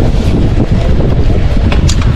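Loud wind buffeting the microphone on an open boat at sea, a steady low rumble.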